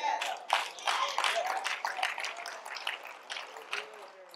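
Congregation clapping and calling out in response: scattered, irregular hand claps with voices over them, dying down near the end.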